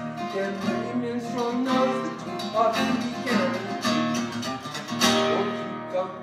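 Acoustic guitar strummed in a live solo song, chords struck again and again.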